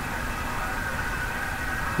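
A steady, unchanging mechanical hum with a few faint fixed tones in it.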